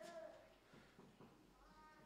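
Near silence: quiet room tone, with a faint brief high tone at the start and another faint, slightly rising one near the end.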